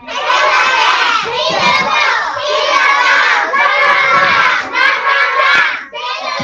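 A class of young children shouting a chant together in unison, in about five loud phrases with short breaks between them.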